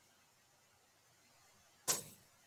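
Near silence with faint room tone, broken by one sharp click near the end.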